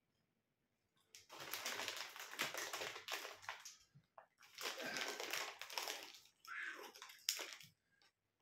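Plastic snack packet crinkling and rustling in two long stretches as a hand rummages in it for a pork scratching, then a shorter rustle near the end.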